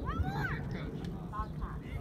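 Young children's high-pitched shouts and calls across a sports field: one long call rising then falling near the start, then shorter calls, over a steady low rumble.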